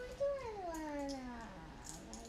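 A voice drawn out in one long call that slides slowly down in pitch and fades out near the end.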